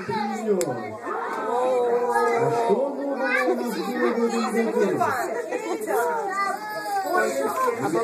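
A crowd of small children talking and calling out at once, many voices overlapping with no single speaker standing out.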